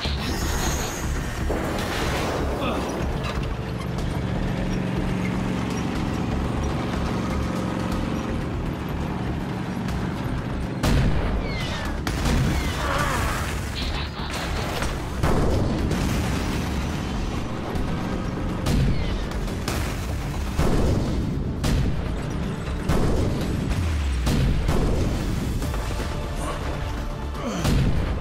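Animated action-scene soundtrack: a dramatic music score with held tones, under a series of booming blaster shots and explosions that come thick in the second half.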